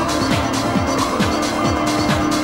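Progressive trance from a vinyl DJ mix: a four-on-the-floor kick drum at about two beats a second, each kick dropping in pitch, with hi-hats and sustained synth tones.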